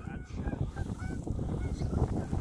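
A quick series of short goose honks and clucks, several a second.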